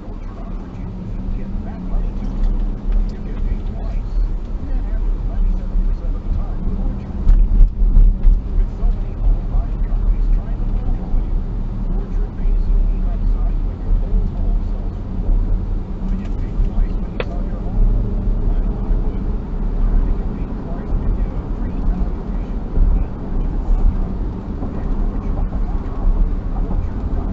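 Car engine and tyre road noise heard from inside the cabin, a low steady rumble that grows louder as the car pulls away from a stop and speeds up, with a thump about seven seconds in.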